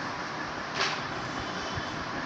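Whiteboard being wiped with a handheld duster, with one short, clearer swish a little under a second in, over a steady hiss.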